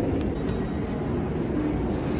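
Steady low rumbling background noise of a railway station, with music faintly underneath.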